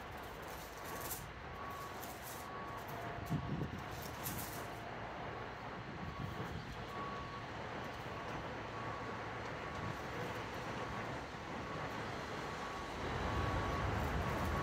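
Outdoor traffic noise with a vehicle rumble that grows louder near the end, and a faint short beep repeating about once a second. Bible pages rustle as they are turned in the first few seconds.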